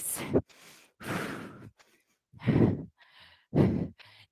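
A woman breathing hard from exertion, with three or four loud, audible breaths about a second apart.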